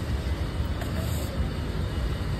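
Steady low rumbling noise with a faint hiss above it and no distinct events.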